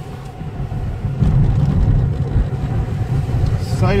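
Car engine and road rumble heard from inside the cabin while driving, growing louder about a second in as the car picks up speed.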